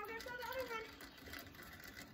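A faint, high-pitched voice in the first second, heard from a distance, then a low, steady outdoor background.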